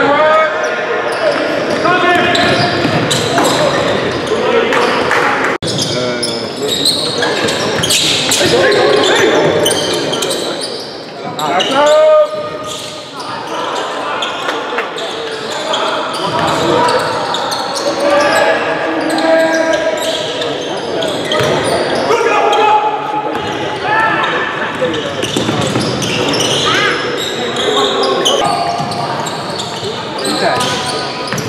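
Basketball game in a gymnasium: the ball bouncing on the court amid many echoing crowd voices and shouts, with one loud shout about twelve seconds in.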